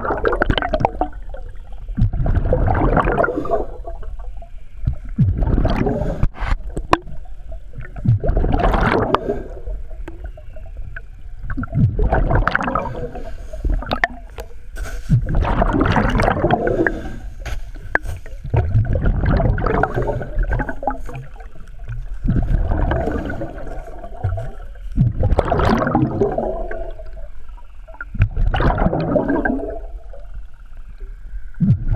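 Scuba regulator underwater during an ice dive: the diver's exhaled air rushes out as gurgling bubble bursts about every three to four seconds, with quieter inhalations through the regulator between them, a steady breathing rhythm of about nine breaths.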